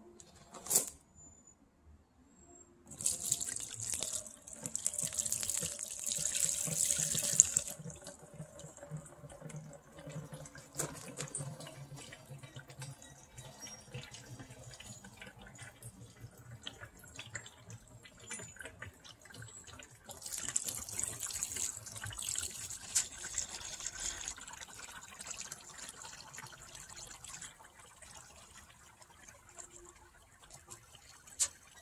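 Spent copper sulfate electrolyte, carrying anode slimes, poured slowly from a plastic tub onto a shop-rag filter over a bucket, splashing and trickling. The pouring comes in two louder spells, a few seconds in and again about two-thirds of the way through, with a softer trickle between.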